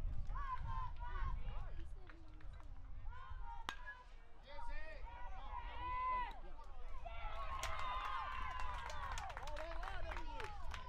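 Indistinct voices of players and spectators calling out and shouting around a youth baseball field, with no clear words; the calls are busiest near the end.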